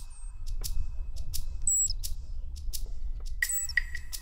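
Ground squirrels calling: a rapid series of short, sharp, high-pitched chirps and whistles, several a second, over a steady low rumble. Near the end a regular run of peeps joins in.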